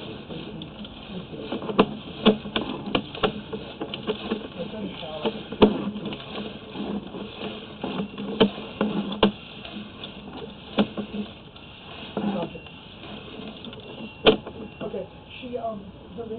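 Irregular sharp clicks and knocks as a sewer inspection camera on its push cable is fed down the pipe, with faint, indistinct voices under them.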